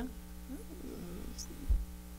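Steady electrical mains hum in the studio microphone line during a pause in talk, with a brief low thump near the end.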